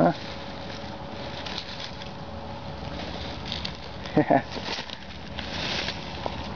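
Steady faint background noise with a thin constant hum, light rustling, and one brief vocal sound just after four seconds in.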